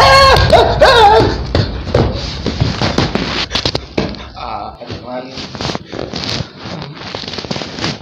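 A man's sudden loud cry, rising in pitch, then several seconds of further agitated cries and breathy noises mixed with short knocks and rustles.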